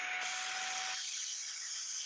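Shark Rocket Apex stick vacuum running in handheld mode, its crevice tool drawing dirt out of a sliding-door track: a steady hiss of rushing air, with a faint steady tone under it that stops about a second in.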